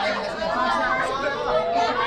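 Chatter of a crowd: several people talking over one another at once, none of it standing out as one voice.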